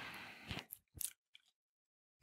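Near silence in a pause of speech: faint room hiss and a few small soft clicks in the first second or so, then dead silence from about one and a half seconds in.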